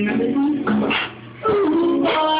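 Live female vocal with acoustic guitar, the voice gliding between long held notes, with a short break a little over a second in.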